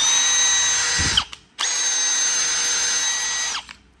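Milwaukee M12 FUEL hammer drill-driver (3404) running free with no load in two trigger pulls: about a second, then about two seconds, each a steady high motor whine that starts and stops abruptly.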